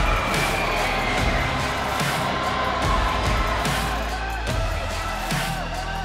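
Background music with a crowd cheering a hockey goal in an ice arena.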